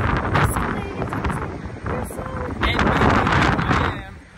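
Strong gusting wind buffeting the microphone, a loud uneven rumble that swells and dips and is loudest about three seconds in.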